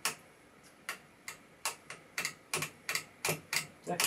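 Front-panel switch on an antique vacuum-tube RF generator being clicked repeatedly by hand through its positions: about a dozen sharp clicks, two to three a second, some in quick pairs.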